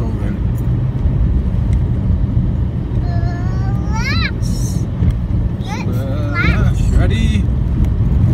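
Skoda Fabia vRS Mk1 1.9 TDI diesel engine and road noise droning steadily inside the cabin. About three seconds in, and several times near the end, someone's voice rises in sharp upward whoops and squeals.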